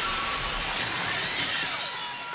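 Large plate-glass window shattering. A dense shower of breaking and falling glass carries on from the crash and thins out near the end.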